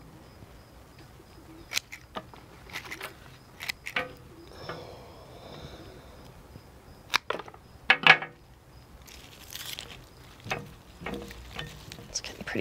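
Hand pruners snipping a leafy peony stem and the leaves rustling as it is handled: a few short, sharp clicks spread out, the loudest about eight seconds in.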